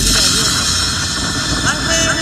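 A voice over the steady hiss and rumble of a car cabin on the move, with the stereo's music briefly dropped out.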